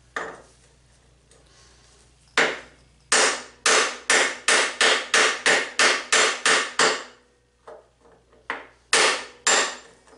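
Hammer blows on a punch against a motorcycle's steering-head bearing race, metal on metal: a single hit, then a steady run of about nine strikes at roughly two a second, a few lighter taps, and two more hard strikes near the end.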